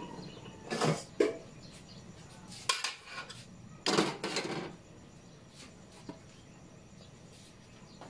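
Metal kitchen utensils and cookware clattering in three short bursts, about a second in, about three seconds in, and about four seconds in, the last the longest.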